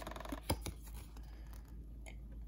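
Handling of a trading card against clear plastic blister packaging: a faint rapid ticking scrape, then two sharp clicks about half a second in, then soft rustling.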